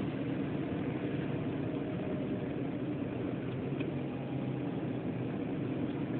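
Steady hum of a car heard from inside its cabin.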